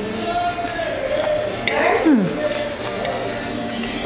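Background music, with a few light clinks of a metal fork against a ceramic plate.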